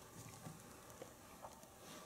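Near silence: room tone with a few faint soft knocks and rustles as an infant climbs over cushions and stuffed toys.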